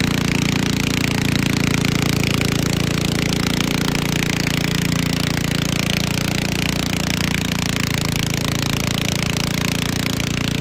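Garden tractor engine running at a steady speed, with an even, rapid low beat and no revving.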